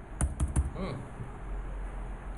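Computer keyboard keystrokes: three or four quick clicks in the first half-second, pressing Enter to add blank command prompts.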